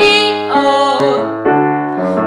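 Grand piano chords accompanying a vocal warm-up. A woman and a girl hold a sung note at the start, and it fades out within the first second. The piano then plays on alone, moving to new chords twice.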